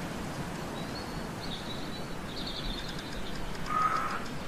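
Faint bird chirps over a steady background hiss, several short high calls strung together through the middle, then one brief clearer whistle near the end.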